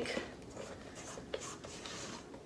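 Spatula scraping and stirring cake batter in a stainless-steel mixing bowl: faint rubbing scrapes with a few light ticks against the bowl.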